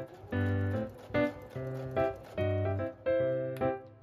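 Background music: a light keyboard tune in short notes at a regular beat.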